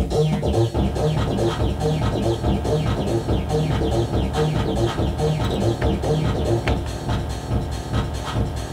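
Roland MC-303 Groovebox playing a techno-style pattern: a steady electronic drum beat with even high clicks over a repeating bass line and synth notes.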